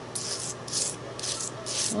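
Metal palette knife scraping modeling paste across a stencil laid on paper: about four short scraping strokes.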